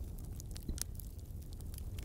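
Faint steady low background noise with a few soft clicks.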